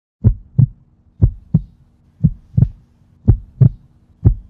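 Heartbeat sound effect: pairs of deep thumps, lub-dub, about one beat a second, four beats in all.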